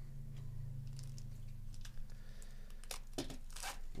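Plastic wrapper of a baseball card pack being torn open and crinkled by gloved hands: scattered crackles from about a second in, thickest near the end, over a low steady hum.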